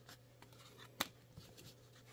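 Faint rustle of baseball cards sliding against one another as they are thumbed through by hand, with one sharp click about a second in.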